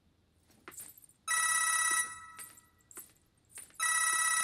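Mobile phone ringing with an electronic ring tone, two rings of under a second each, the second starting near the end. Faint taps sound between the rings.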